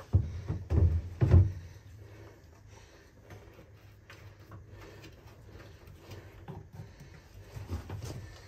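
A few dull knocks and bumps from a plastic gas can being handled, with the loudest three in the first second and a half, then faint clicks and rustling.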